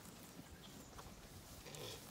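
Faint sounds of Zwartbles sheep grazing close by, quietly tearing at and chewing grass, with a few soft ticks.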